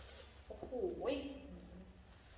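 A thin plastic bag of vegetables crinkling as it is handled, and, starting about half a second in, a short low voiced sound that glides down in pitch.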